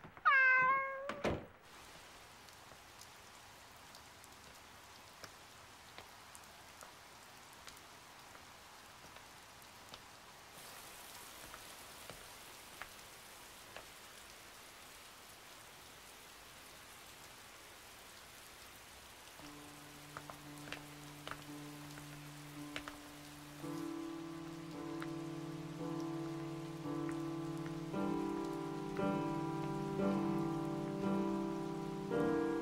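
A cat meows once at the start, then steady rain falls on a street. Slow music with long held notes comes in about two-thirds of the way through and builds toward the end.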